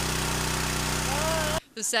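Cloudy, sediment-laden water gushing from a three-inch pump discharge hose with a loud rushing hiss, over the steady hum of an engine running. The sound cuts off suddenly about one and a half seconds in.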